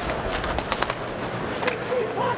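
Ice hockey arena ambience: a steady crowd murmur with scattered sharp clacks of sticks and puck as players battle along the boards behind the net.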